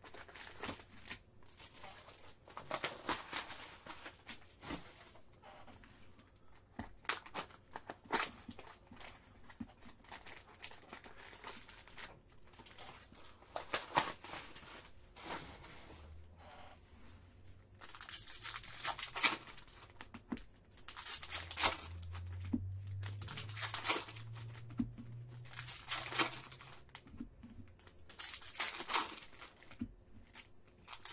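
Trading-card packaging crinkling and tearing: a Bowman Chrome hobby box's wrapping and foil pack wrappers being ripped open and handled, in irregular rustles and rips that grow busier in the second half.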